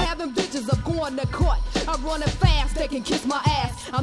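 G-funk gangsta rap track playing: vocal lines over a steady drum beat and deep bass.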